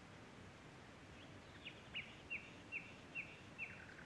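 A bird singing a phrase of about six short, repeated, downward-sliding whistled notes, roughly two and a half a second, closing with a lower brief flourish. It sounds faint over a steady hush of outdoor background noise.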